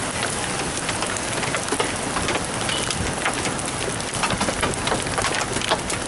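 Heavy rain falling: a steady hiss with many sharp drop hits close to the microphone.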